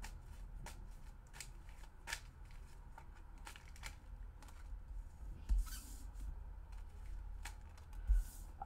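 Tarot cards being shuffled by hand, a run of scattered soft clicks and snaps. Cards are then laid down on a wooden table, with a louder thump and slide about five and a half seconds in.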